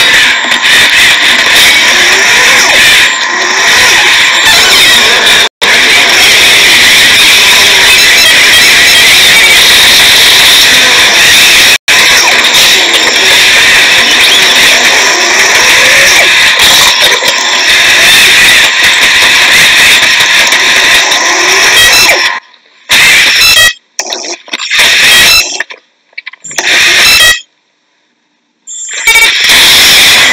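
Soundtrack of a video played on a phone speaker held up to the microphone: loud, dense noise. It cuts out in short choppy gaps near the end.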